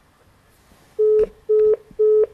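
Telephone busy tone after the call is hung up: short beeps of one low steady tone, about two a second, beginning about a second in.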